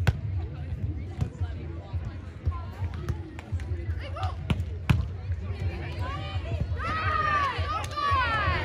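A beach volleyball rally: a series of sharp, separate slaps of hands and forearms on the ball, starting with the serve. Near the end, voices shouting as the point ends.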